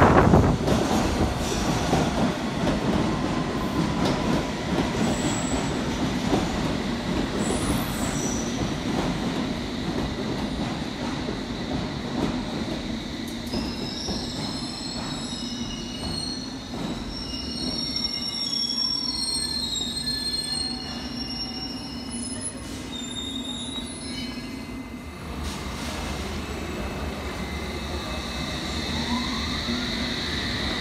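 London Underground S7 stock trains in a subway station: a loud rumble at the start, then a steady low running hum with scattered high-pitched wheel squeals through the middle. Near the end a rising motor whine as a train accelerates away.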